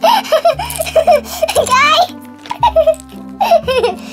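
A girl giggling in a quick run of short, high-pitched laughs, over background music.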